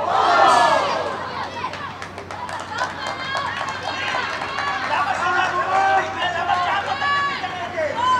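Football players shouting to one another on the pitch during play, several high voices overlapping, with one loud shout about half a second in.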